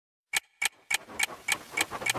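Sharp, clock-like ticks opening a dancehall track, about three a second: six of them, starting about a third of a second in, with a faint hazy wash building up between them.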